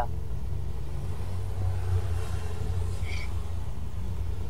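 Steady low rumble of background noise on a video-call audio feed during a pause in speech, with a brief faint high tone about three seconds in.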